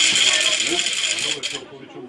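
Referee's whistle blown in one long shrill blast that stops abruptly after about a second and a half.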